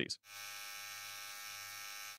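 Philips OneBlade Pro Face & Body (QP6650) trimmer running unloaded in the air, a steady even hum with a stack of high tones, full and round and fairly quiet at about 58 dB on a sound meter. It starts about a quarter second in.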